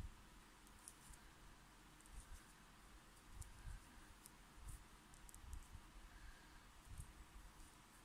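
Near silence, with scattered faint clicks and soft handling noise from a metal crochet hook working yarn into single crochet stitches.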